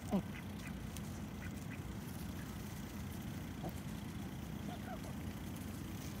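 Domestic ducks quacking as they forage: one loud quack right at the start, then a few soft, short calls scattered through, over a steady low background rumble.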